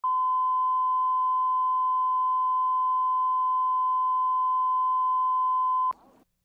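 Steady, high-pitched sine-wave reference tone (line-up tone) that goes with colour bars at the head of a videotape, holding one pitch and level, then cutting off abruptly with a click just before the end.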